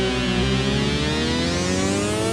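Yamaha CS-80 analogue polyphonic synthesizer playing a held chord. From about half a second in, part of the chord slides slowly and steadily upward in pitch, bent on the ribbon controller.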